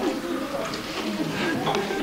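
Indistinct voices of people talking quietly in a room, with no clear words.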